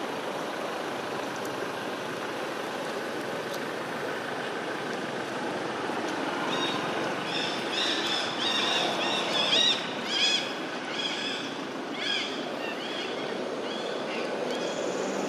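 A steady outdoor noise haze, joined about halfway through by a quick run of short, high-pitched chirping animal calls, loudest a little past the middle, which thin out near the end.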